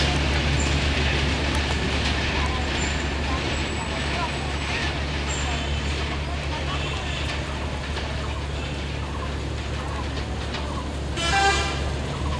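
A passenger train running along the track with a steady low rumble. Near the end comes a brief horn toot, about half a second long and the loudest sound.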